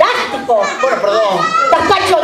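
Lively, high-pitched voices calling out, children's voices among them.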